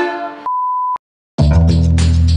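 Ukulele strumming with a woman singing cuts off, followed by a single electronic beep about half a second long at one steady pitch. After a brief silence, a loud background music track with heavy bass starts.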